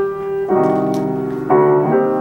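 A grand piano played four hands in a slow elegiac piece: sustained chords, with a new one struck about every second and left ringing.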